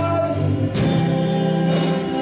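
Live worship band playing with electric guitars, keyboard and drums; a male singer's held note ends about half a second in and the band carries on.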